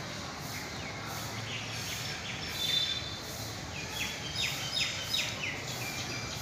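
Birds calling in the trees: short, quick chirps that sweep downward in pitch, coming in clusters, with a run of several about four to five seconds in, over a steady outdoor background hiss.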